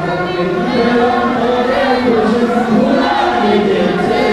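A group of voices singing a chant in unison, loud and continuous.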